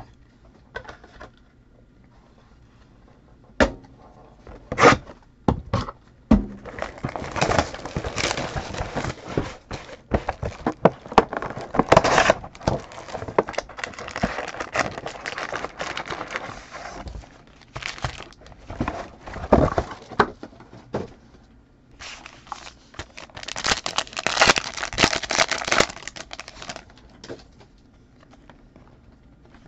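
Plastic wrap and cardboard card-box packaging being torn open and crinkled as a sealed Panini Phoenix football card box is unwrapped, with a couple of sharp clicks about four and five seconds in. Long stretches of dense crinkling and tearing follow as the packs are handled and torn open.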